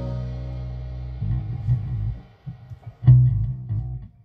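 A band's final chord on electric guitar and bass ringing out and fading, then a few loose, scattered bass guitar notes plucked through an amp, with one loud low note about three seconds in that is cut off near the end.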